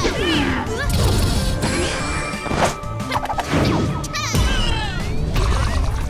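Cartoon fight sound effects: a dense run of hits and crashes, with swooping pitch sweeps near the start and again after about four seconds.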